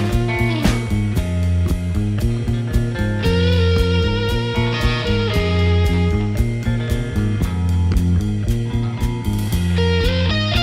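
Instrumental psychedelic rock break: electric guitar lines over bass and a steady drum beat, with no vocals. A guitar note bends down in pitch just after the start, and a high held note rings out a few seconds later.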